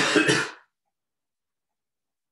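A man clears his throat with a short cough, two quick bursts together lasting about half a second right at the start, then silence.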